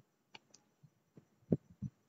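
Quiet room tone with a few faint clicks and two short, soft low thumps about one and a half seconds in.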